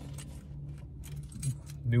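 Steady low hum inside a parked car's cabin, with a few faint clicks; a man's voice starts again near the end.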